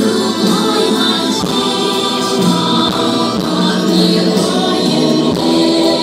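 Loud concert music with a choir singing held notes over instrumental backing, played for a stage dance performance.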